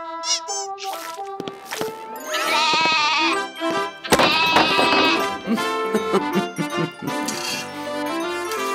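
Cartoon goat bleating twice in wavering cries, about two seconds in and again at about four seconds, over light background music.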